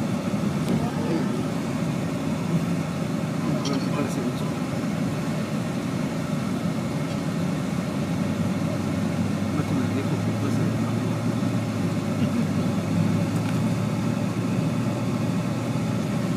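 Steady engine and tyre noise of a moving vehicle heard inside its cabin, an even low drone with no changes in speed.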